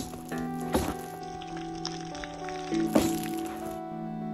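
Background music, over which a push knife's blade stabs into a hanging plastic jug full of liquid: a sharp hit at the start, another under a second later, and a third about three seconds in.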